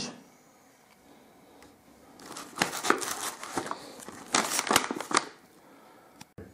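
Packaging crinkling and rustling in two bursts as a gift bag is unpacked by hand, the second about a second after the first.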